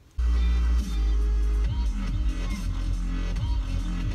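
Electronic dance music with heavy, sliding bass playing loudly from a car stereo tuned to an FM station. It starts suddenly just after the beginning.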